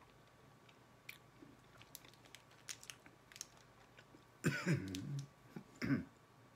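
Chewing and crunching a hard chili candy, a run of small soft clicks, then a loud low burp about four and a half seconds in, followed by a brief throat noise near the end.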